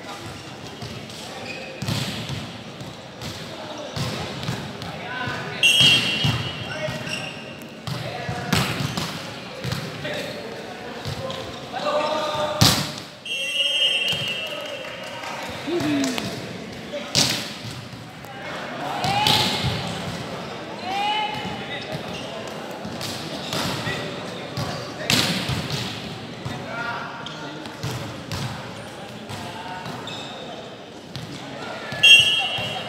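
Indoor volleyball play: sharp slaps and thuds of the ball being hit and landing on a hardwood court, mixed with players' shouts and calls, echoing in a large hall. The loudest impact comes a little before halfway.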